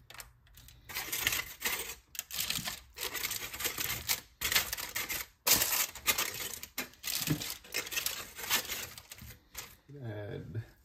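Aluminium foil crinkling and rustling in irregular bursts as hands work over it on a baking sheet.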